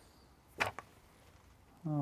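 A single short slap on the tabletop just over half a second in, with a faint tick just after: a table tennis rubber sheet being laid down flat on the table.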